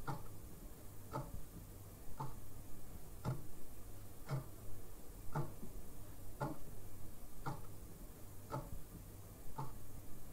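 Clock-like ticking in a dark ambient music track: one tick about every second, evenly spaced, over a low steady hum.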